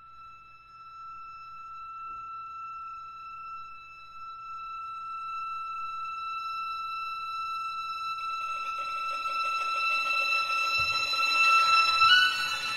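Clarinet and string quartet: a single high held note swells slowly from very quiet, and about eight seconds in other instruments enter softly beneath it, growing louder toward the end.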